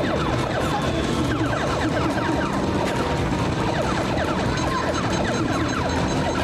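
Space Invaders arcade game with mounted laser guns: a rapid stream of overlapping falling-pitch laser zaps and explosion effects over the game's electronic music.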